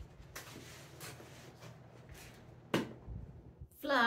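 Quiet rustling and handling sounds of someone moving about with gear, with a single sharp knock about three quarters of the way through. A woman's voice starts at the very end.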